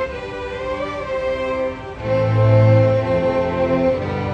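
Student string orchestra playing, violins holding long bowed notes; about halfway through, a low sustained note comes in underneath and the music grows louder.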